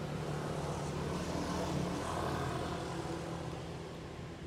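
A passing engine: a steady low drone that builds to its loudest about two seconds in, then fades.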